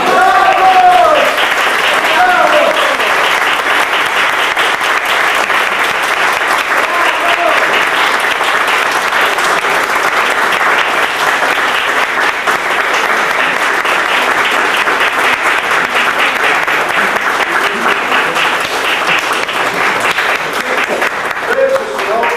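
Audience applauding steadily, with a few voices calling out in the first few seconds.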